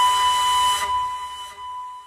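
Background flute music: one long held note that fades away in the second half.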